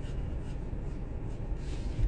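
Faint scratchy rubbing and handling noises against the phone's microphone, over a steady low rumble in a car cabin.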